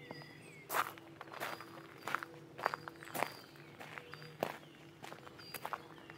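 Footsteps on a gravel path at an even walking pace, one step roughly every two-thirds of a second.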